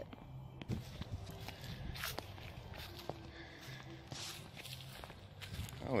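Footsteps in flip-flops on grass and dry leaves: soft, irregular steps with a few light clicks.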